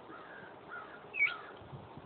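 A bird calling: three short squawks, the last one louder and higher-pitched with a quick dip and rise.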